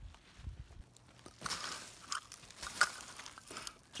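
Dry crunching and rustling of bark, twigs and ground litter being walked over and picked through, in irregular bursts from about a second in.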